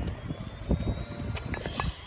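Footsteps on paved ground coming close, with a series of sharp knocks and clunks as a pair of 8 kg kettlebells is carried and lowered to the ground, the loudest about a third of the way in. A steady low outdoor hum lies underneath.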